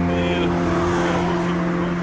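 A car passing on the road: a rush of tyre and engine noise that swells in the middle and fades, over steady background music with long held notes.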